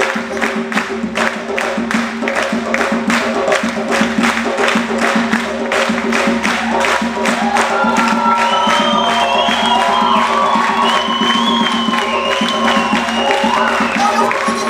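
Live band music: a hand drum and drum kit keep up a fast, steady beat over bass and held chords. From about halfway in, a high voice sings long, gliding lines over the groove.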